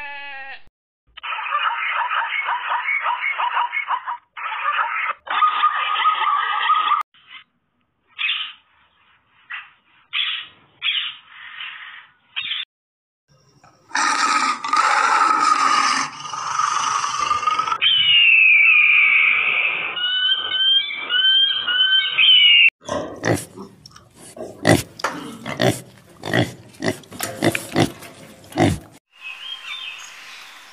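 A run of different animals' calls edited one after another, each clip cutting off abruptly into the next, with a stretch of rapid sharp clicks or knocks near the end.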